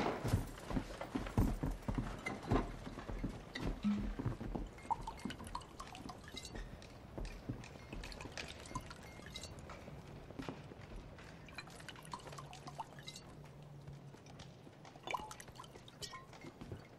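Scattered knocks and footsteps on a wooden floor, then whiskey poured from a bottle into a shot glass, with light clinks of glass.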